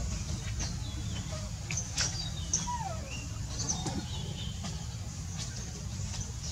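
Scattered short, high-pitched animal chirps and clicks, with one falling call about three seconds in, over a steady low rumble.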